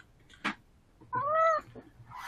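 A cat meows once, a single call that rises and falls in pitch, about a second in, with a short click just before it.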